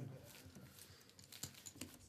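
Faint, light clicking of poker chips being fingered and stacked by hand, a few quick clicks near the end.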